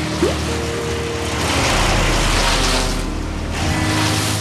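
Background music over a wood chipper running and shredding material. A dense noisy grind swells about a second and a half in and eases off near the end.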